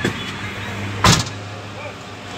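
Steady low hum of an idling vehicle, heard from inside it, with one loud sharp thump about a second in.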